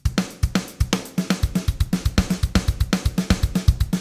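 Software drum kit beat run through Logic Pro's Note Repeater MIDI effect, each hit repeated at dotted-eighth spacing, giving a rapid, evenly spaced stream of kick, snare, hi-hat and cymbal hits. It sounds very mechanic, with no dynamics between the repeats.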